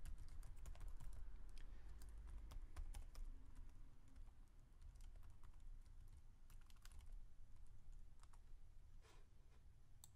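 Computer keyboard being typed on, faint, in scattered key clicks over a low steady hum.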